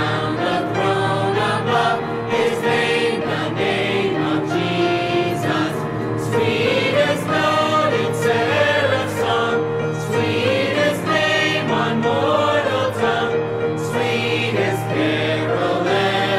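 Music with a choir singing in long, held notes that slide between pitches.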